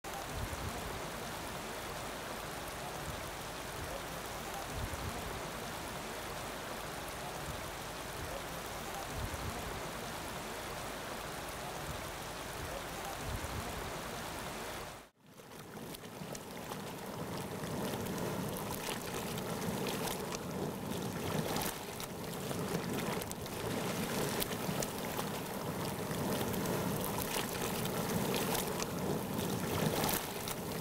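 Hot spring water flowing and bubbling. For the first half it is a steady rushing noise with low gusts of wind on the microphone. After a short break about halfway it is louder and more uneven, with many small splashes and pops.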